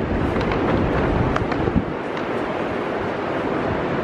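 Wind on the microphone, a steady rumbling noise, over the hum of city street traffic.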